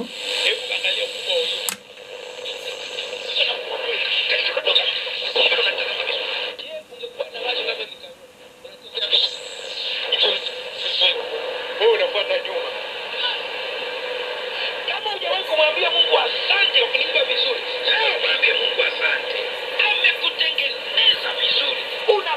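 Shortwave broadcast of a voice speaking a foreign language, playing through a home-built shortwave receiver's small loudspeaker with its sharp (about 5 kHz) IF filter switched in. The sound is thin, cut off at top and bottom, and fades briefly about seven seconds in.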